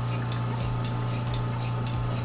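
Portable milking machine running on a cow: the vacuum pump hums steadily under a regular hissing tick from the pulsator, about three ticks a second, as milk is drawn through the hoses.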